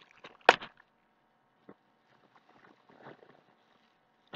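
Items being pulled out of a shipping bag: one sharp crinkle about half a second in, then faint rustling and small knocks.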